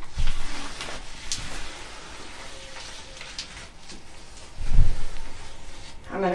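Blue painter's tape being peeled off the edge of a resin-coated tabletop, a faint crackling rip, with a dull low thump about three-quarters of the way through.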